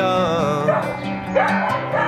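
Background music with steady sustained chords, over which a dog gives high, wavering cries twice: once at the start and again, rising, near the end.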